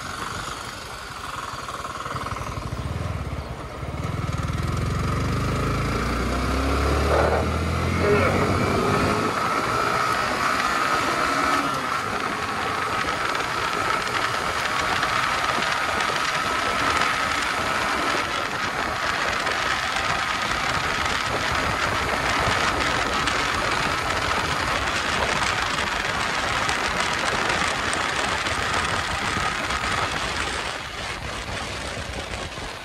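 Yamaha R15 V3 single-cylinder motorcycle engine pulling away, its pitch rising about seven seconds in, then running at steady speed under a loud rush of wind over the helmet-mounted microphone.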